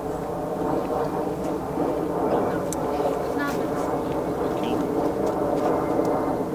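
A steady droning hum with a few light clicks and rustles.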